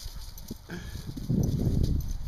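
Belgian Sheepdogs wrestling in play: paws scuffling and thudding on frozen ground in an irregular patter, loudest in a rough burst over the last two thirds of a second.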